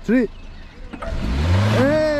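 Small hatchback's engine revving up with a rising note as the car pulls away over loose dirt and gravel, tyre and stone noise mixed in, starting about a second in. A man shouts "hey, hey" near the end.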